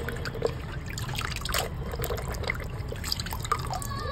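A small plastic toy tractor swished by hand in a tub of water: light, irregular splashing and sloshing, with drips falling back into the water as it is lifted out.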